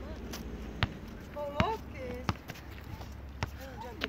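A football kicked and bouncing on asphalt: four sharp thuds about a second apart, the second the loudest. Short voice calls come in between them.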